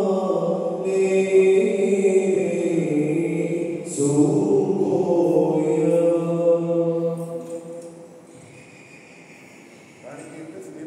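Men's voices chanting an Orthodox liturgical hymn in long held notes. The chant breaks briefly about four seconds in and fades out about eight seconds in.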